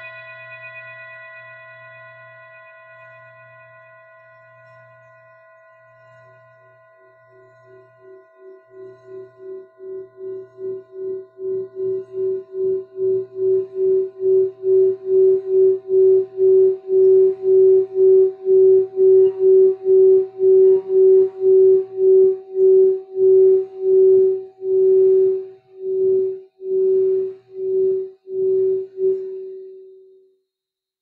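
Singing bowls: the fading ring of a struck bowl gives way, about six seconds in, to a mallet rubbed around a bowl's rim. This draws out one pulsing tone that swells to loud, its pulses about two a second and slowing near the end, before it cuts off suddenly.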